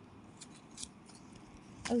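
Faint, sparse crisp crackles from a crunchy snack and its packet being handled and eaten. A short voice comes in near the end.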